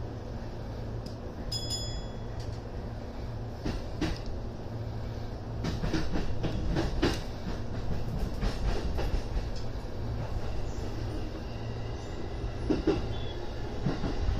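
Electric commuter train running, heard from inside the front car: a steady low rumble with sharp clicks and knocks as the wheels cross rail joints and points, thickest in the middle. A brief high beep sounds about one and a half seconds in.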